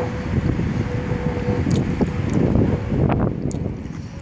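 Wind buffeting the microphone: a loud, uneven low rumble that swells in the second half, with a few brief clicks.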